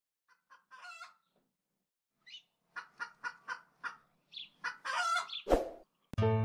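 Chicken clucking: about a dozen short clucks in uneven groups, growing louder, then a longer, louder squawk. It ends in a sudden loud burst shortly before the end.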